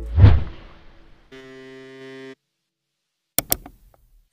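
A gap in the background song filled by edit sound effects: a loud deep boom that fades over about a second, then a held buzzy tone lasting about a second, silence, and two quick clicks near the end.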